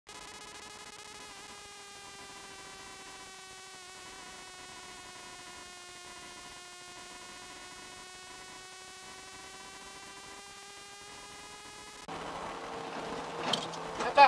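A stock car's engine drones at steady high revs, its pitch dipping slightly through the middle and rising again. About two seconds from the end the sound cuts abruptly to a louder, rougher in-car noise with a low hum.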